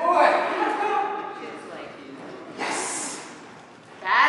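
A person speaking indistinctly in a large, echoing room, followed near the three-second mark by a short breathy hiss, like a sharp exhale or snort.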